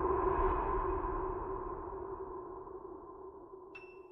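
Dark ambient electronic drone from a song's intro, swelling briefly and then fading away, with a faint high ping near the end.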